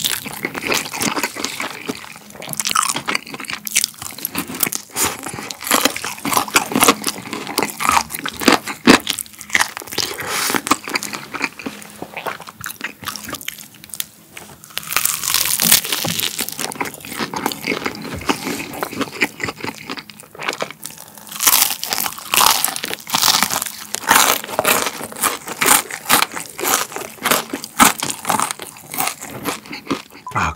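Close-up crunching bites and chewing of crispy fried chicken coated in cheese-style seasoning powder, a dense run of crisp crackles that comes and goes with each bite.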